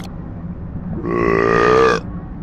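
A man's loud, drawn-out burp after swallowing beer. It starts about a second in, lasts about a second and cuts off abruptly.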